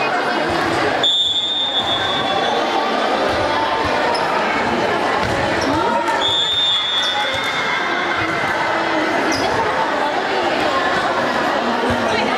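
Volleyball match in a large echoing sports hall: players and spectators talking and calling out, with the thuds of the ball being hit and bouncing. Two short, steady, high referee's whistle blasts sound, one about a second in and one about six seconds in.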